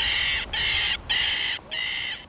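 A row of four harsh, rasping animal calls, each about half a second long with short gaps between them, high-pitched and without a clear note.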